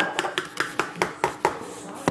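Metal measuring spoons on a ring clinking together as they are handled, a quick run of light clicks that dies away near the end.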